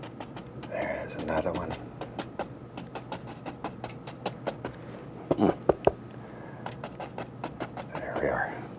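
A large flat bristle brush tapping and dabbing against a wet oil-painted canvas, a string of short, irregular taps with a louder flurry about five and a half seconds in. The brush is tapping in small bushes and foliage.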